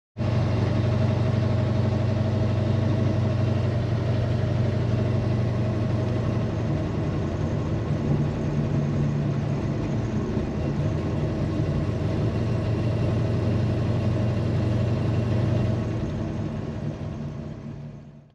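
A Plymouth Superbird's 543-cubic-inch V8 running steadily, heard from inside the cabin. It fades out near the end.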